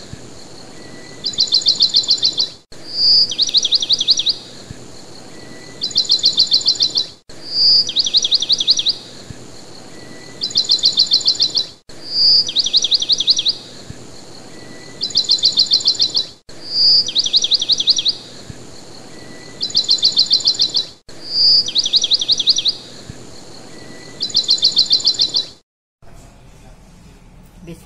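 Bird chirps in a short looped recording: each repeat is a single high note, then a rapid trill of quick falling notes, then a second, higher trill. The same phrase comes round about every four and a half seconds, about six times, cutting off abruptly between repeats.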